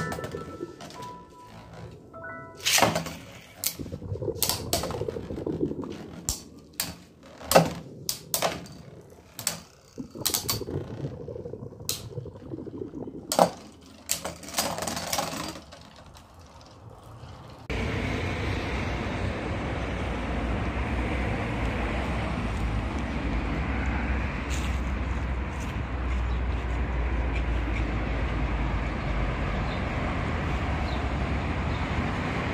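Beyblade spinning tops launched into a plastic stadium, clashing and knocking: sharp plastic clacks scattered through the first fifteen seconds or so. About eighteen seconds in, this gives way suddenly to a steady outdoor background rumble.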